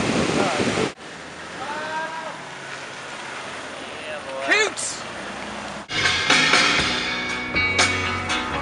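Surf and wind rushing on the microphone, cut off abruptly about a second in; then quieter outdoor ambience with a few brief gliding pitched calls. Rock music with guitar starts about six seconds in.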